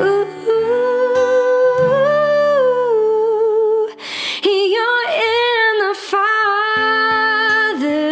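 A woman singing long, wordless held notes with vibrato over acoustic guitar accompaniment, taking a breath about four seconds in.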